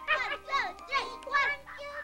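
High-pitched puppet voices chattering and vocalizing excitedly, with waltz music from a tape playing underneath.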